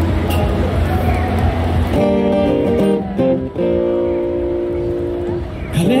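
Street noise with a low traffic hum, then about two seconds in an acoustic guitar starts playing chords that ring out, changing chord a few times. A man's voice begins singing right at the end.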